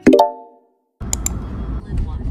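A short pop sound effect with a brief ringing tone that fades within half a second, followed by a moment of silence. Then the low rumble of a car's interior starts suddenly, with two quick clicks just after.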